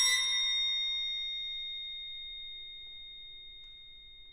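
A struck metal percussion instrument rings out with a few clear, high, bell-like tones, its ring fading steadily over about four seconds. The violin's last note dies away in the first second.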